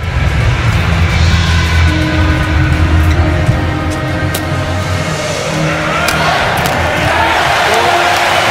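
Badminton rally: a shuttlecock is struck by rackets several times and court shoes squeak on the floor, over steady background music.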